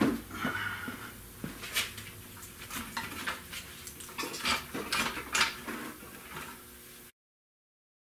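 Scattered metallic clinks and knocks, a dozen or so irregular strikes, from the chain and steel parts as an automatic transmission chained to a floor jack is handled and worked on behind the engine. The sound cuts off suddenly about seven seconds in.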